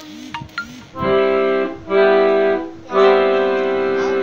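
Three held chords on an organ- or accordion-like keyboard instrument, the first two short and the third held longer.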